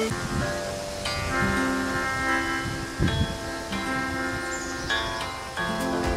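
Folk instruments playing a slow tune together: plucked mountain dulcimer and long table zither notes, with held notes from a melodica.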